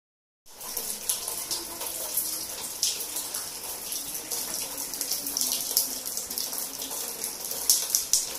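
Water leaking through a gap in the ceiling and falling into plastic basins on the floor: a steady splashing hiss with many sharp drips, starting about half a second in.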